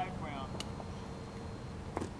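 Quiet outdoor background: a low steady hum with a faint thin tone. A faint pop comes about half a second in and a sharper one at the end, after a voice trails off at the start.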